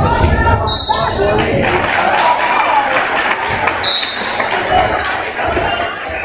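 A basketball bouncing on a hardwood gym floor in the first second, amid echoing crowd chatter. Two short, high, steady referee whistle blasts come about a second in and again around four seconds.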